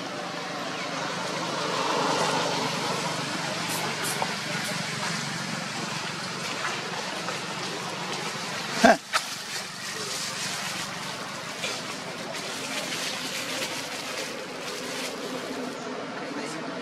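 Outdoor background of indistinct voices, with a single sudden thump about nine seconds in.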